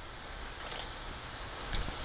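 Cast-iron skillet of mushrooms and herbs sizzling faintly and steadily as lemon juice is squeezed into it, with a few faint clicks.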